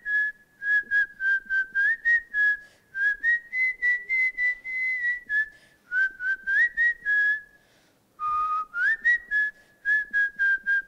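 A woman whistling a tune into a handheld microphone: a quick run of short, clear notes stepping up and down in pitch, with a short pause about eight seconds in.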